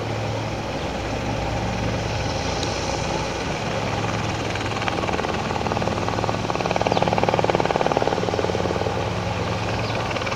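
Helicopter flying near: a steady engine and rotor drone, with the rapid beat of the blades swelling loudest about seven to eight seconds in.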